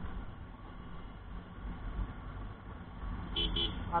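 Low, steady rumble of a Bajaj Pulsar 220F's single-cylinder engine at low road speed, mixed with wind noise on the bike-mounted microphone. Two short horn toots sound near the end.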